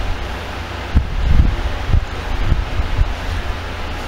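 Hands gripping and twisting a small plastic toy capsule egg to pry it open: a low handling rumble with a few dull thumps, about a second in, around a second and a half, and again near two and a half seconds.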